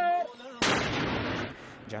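Mortar fired: a single sudden blast about half a second in, dying away over about a second.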